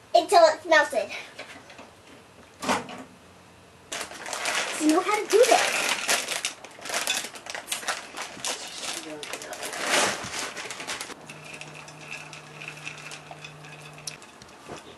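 Semi-sweet chocolate chips poured from a bag into a glass pie dish: a dense rattle of many small pieces landing on glass and on each other, starting about four seconds in and lasting about seven seconds.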